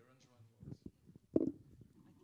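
Low, indistinct voices and a few knocks and rustles from a microphone being handled, the loudest a sharp knock about one and a half seconds in.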